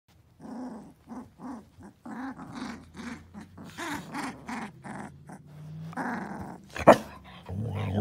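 Husky puppies play-growling in a quick series of short growls and yips. A single sharp sound comes about seven seconds in, and then a louder, deeper, drawn-out growl starts near the end.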